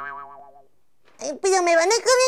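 A cartoon sound effect: a single twanging tone of steady pitch that fades away over about a second.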